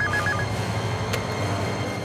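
Desk landline telephone ringing with a rapid warbling two-tone electronic trill that stops about half a second in, then a single click about a second in as the receiver is lifted, over steady low background music.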